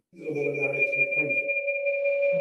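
Video-call audio glitching: a man's voice breaks up while two steady electronic tones hold under it, a high one throughout and a lower one joining about a second in, the sign of a faltering connection.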